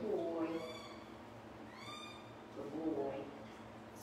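Bush dog making high-pitched squeaking whines. The clearest is a single call about halfway through that rises and then falls in pitch, with shorter, lower calls near the start and near the end.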